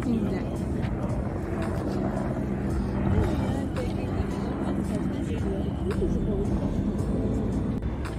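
People's voices chattering outdoors over steady background music, with a low rumble underneath.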